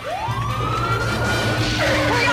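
Police car siren sound effect wailing, rising in pitch over the first second and then holding, over a low engine rumble as the car speeds past. A warbling high sound comes in near the end.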